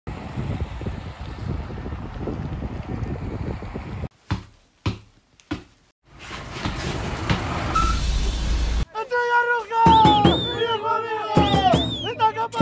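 Street traffic noise, then a few short knocks, then a vehicle approaching that ends in a short hiss. In the last three seconds voices sing a drawn-out football chant.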